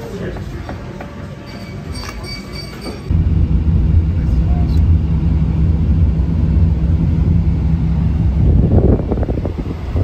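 Restaurant room noise with a few light clinks, then a sudden change about three seconds in to a loud, steady low drone of engine and road noise inside a moving pickup truck's cab.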